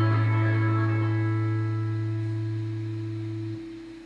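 Fender Stratocaster electric guitar letting its final chord ring out and slowly fade, with no new notes played. The low bass note is cut off about three and a half seconds in while a higher note keeps ringing.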